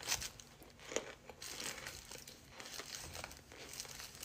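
A mouthful of cornstarch being chewed, giving faint, irregular crunching and crackling, with sharper crunches at the start and about a second in.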